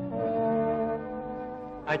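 Orchestral film score: brass holding slow sustained chords, the chord shifting just after the start. The sound is dull and narrow, as on an old film soundtrack.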